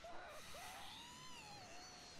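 Near silence: only a faint wavering tone that rises about half a second in and then slowly falls, from the anime episode's audio played low.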